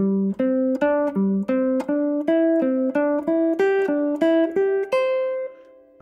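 Semi-hollow electric guitar playing single picked notes, about three a second. The notes cycle through the C, D, E, G melodic structure in changing orders and inversions, and the run ends on a held note that rings and fades.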